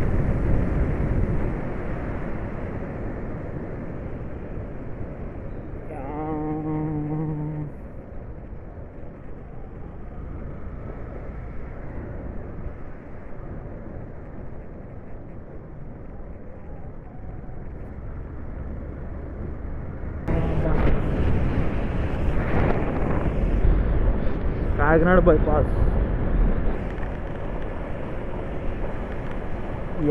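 Wind rushing over the microphone with the engine rumble of a motorcycle being ridden at road speed, getting louder from about twenty seconds in. A brief steady-pitched tone sounds about six seconds in.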